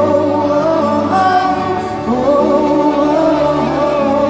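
A female pop singer's live vocal over band backing, coming through a concert PA and recorded from the audience of a large arena. She sings long, held notes that slide between pitches.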